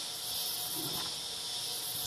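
Steady high-pitched chorus of insects.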